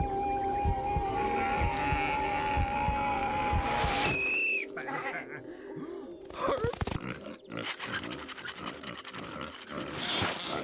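Cartoon soundtrack: music with one long held note over a steady low beat, cutting off about four seconds in. Then comes a short high rising-and-falling squeal, followed by scattered animal grunting and comic sound effects.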